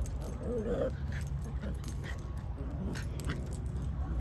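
Small dogs wrestling in play, giving a few short soft whines, about half a second in and again near three seconds, with some light clicks, over steady low background noise.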